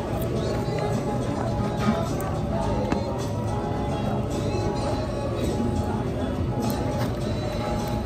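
Background music playing in a restaurant dining room over the murmur of other diners talking, with a few light clicks.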